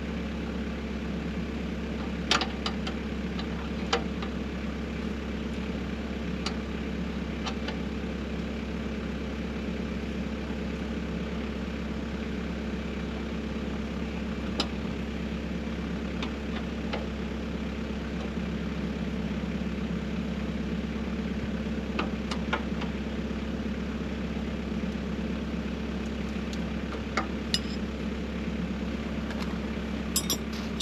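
Engine of a tracked snow blower idling steadily, with a few sharp metallic clicks from hands and tools working on the machine.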